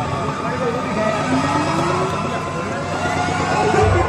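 Crowd chatter, many voices overlapping with no beat under them.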